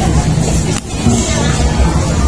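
Steady low engine-like rumble with a hum, with a brief dip in loudness just under a second in.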